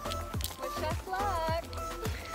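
Background music with a steady kick-drum beat, a sustained bass line and a wavering, voice-like melody.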